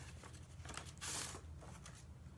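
Faint handling of paper, with one short rustle about a second in, as a greeting card is picked up.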